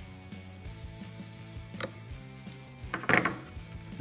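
Background music with steady sustained notes. Over it, metal long-nose pliers click against the guitar's jack-socket nut as it is tightened: a sharp click a little before two seconds in, and a louder short scraping burst about three seconds in.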